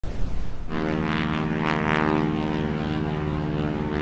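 An aircraft engine running at a steady pitch, coming in under a second after a brief rush of noise.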